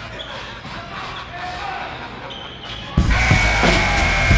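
A basketball bouncing on a gym's hardwood floor, with voices echoing around the hall. About three seconds in, loud music with a steady beat cuts in over it.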